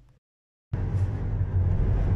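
Silence for about half a second, then steady tyre-roar and wind noise starts suddenly inside a Tesla Model 3's cabin cruising at about 70 mph, with no engine note since the car is electric.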